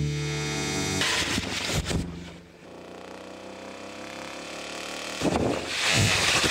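Steady electronic music tones that break off about a second in, then a short noisy stretch and a low hum with faint tones. About five seconds in, water starts running from a washbasin tap in a rising rush.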